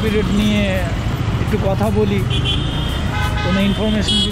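Busy city traffic heard from a Yamaha MT-15 motorcycle on the move: steady engine and road rumble, with short high vehicle-horn toots about half a second in and again just past two seconds.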